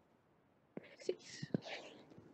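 A soft whisper begins about three-quarters of a second in and carries on to the end, mixed with a few light taps of a stylus on a tablet screen.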